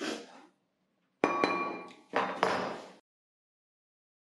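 Chef's knife chopping walnuts on a plastic cutting board: a few sharp chops with a slight metallic ring. The sound then cuts out completely about three seconds in.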